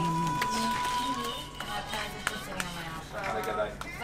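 Background music and low voices, with a few isolated soft clicks as a deck of playing cards is handled and split in two before a shuffle.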